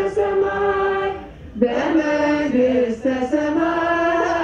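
Voices chanting an Ethiopian Orthodox hymn together in long held notes that step up and down in pitch. The singing drops away briefly just past a second in, then comes back.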